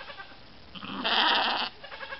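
A sheep bleating once, a harsh, quavering bleat about a second long that starts a little under a second in.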